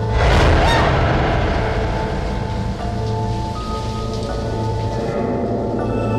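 A sudden thunderclap crash about half a second in, dying away over the next few seconds, over sustained eerie background music.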